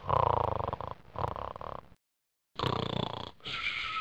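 Loud, exaggerated snoring: two rasping breaths in and out, the last out-breath ending in a whistle.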